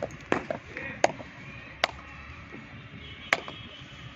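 Sharp slaps of bare hands, about five at uneven intervals, over a low background murmur.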